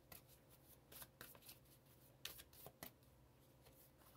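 Faint, scattered clicks and rustles of tarot cards being handled, a dozen or so short strokes over about three seconds.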